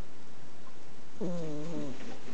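A flat-faced Exotic Shorthair cat snoring in her sleep: one humming, drawn-out snore on a breath, starting about a second in and lasting under a second.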